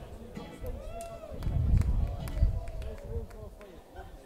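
A live band's song stops abruptly at the start, then scattered voices from the audience with a few sharp claps.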